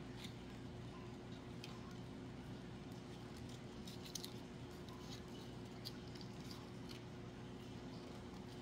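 Faint rustles and a few small clicks of hands handling and pressing glittered craft-foam pieces together, over a steady low hum.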